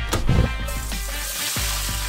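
Diced chicken and dried red chillies sizzling in hot oil in a steel wok, the sizzle starting just under a second in, over background music.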